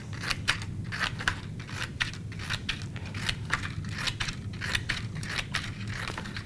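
Scissors snipping again and again into a strip of poster board, cutting a fringe: a quick, even run of short, crisp snips.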